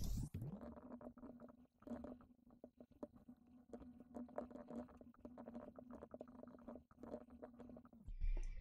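Faint computer-keyboard typing: quick, irregular key clicks over a steady low hum.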